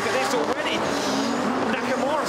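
Tandem drift cars' engines running at high revs on full throttle, with the engine pitch wavering and then climbing steadily over the last second.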